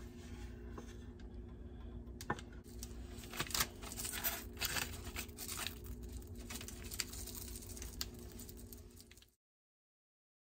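Kitchen handling sounds: a stainless steel pot scraped and tipped as thick fudge is poured into a parchment-lined glass baking dish, the parchment crinkling, then sprinkles shaken from a small jar pattering and rattling onto the fudge, with scattered small clicks and scrapes. A steady low hum runs underneath.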